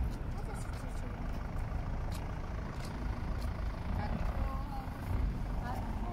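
Wind buffeting a phone microphone outdoors: an uneven low rumble throughout, with faint voices now and then.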